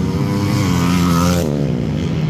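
Motocross bikes running hard at full throttle as they race past on a dirt track. The engine note is loud and fairly steady, and it drops back about a second and a half in as the bikes move away.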